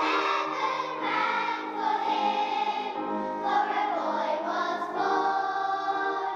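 A choir singing with musical accompaniment, holding long notes.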